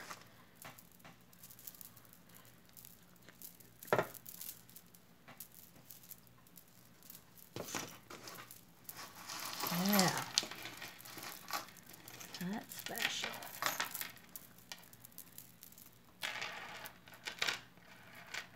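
Strands of a beaded necklace, mostly glass beads, clicking and rattling against each other and the wooden table as they are handled and untangled, with a sharp click about four seconds in and busier rattling later. A short hum of voice comes near the middle.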